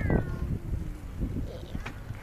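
A girl's voice imitating a cat's meow: one short call falling in pitch at the start, over low wind rumble on the microphone.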